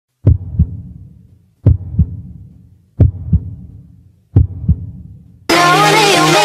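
Heartbeat sound effect: four deep double thumps, lub-dub, about a second and a half apart, each fading away. About five and a half seconds in, loud electronic dance music starts suddenly.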